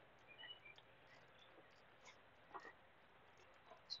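Near silence: faint outdoor ambience with a few faint, short bird chirps in the first second.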